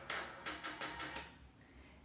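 A run of about six light clicks in a small room over the first second and a half, then near silence.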